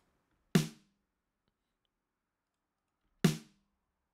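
Software drum-machine hit, likely a kick, played back from a drum track. It sounds twice, about half a second in and again a little over three seconds in, each a sharp attack with a short decay.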